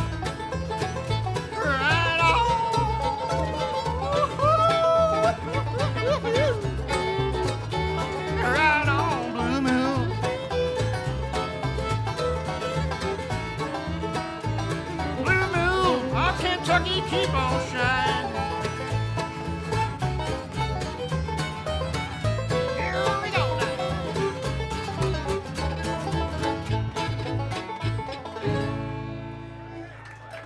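Bluegrass band playing an instrumental break: a fiddle melody with slides and vibrato over banjo rolls, acoustic guitar and a steady upright bass pulse. The tune stops on a held final chord near the end.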